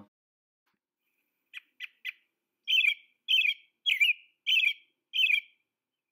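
American robin singing its 'cheer up, cheerio' song. About a second and a half in come three short, soft notes, then five louder whistled phrases a little over half a second apart.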